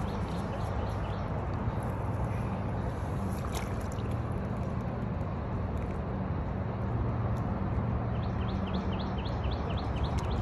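Steady low rumble and hiss of outdoor background noise, with a rapid series of short high chirps, about seven a second, lasting about a second and a half near the end.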